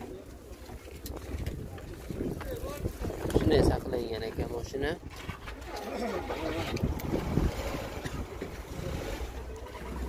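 Indistinct voices of people talking in the background, with a low, uneven outdoor rumble underneath.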